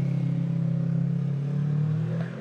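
A motor vehicle engine running with a steady low hum, easing off just at the end.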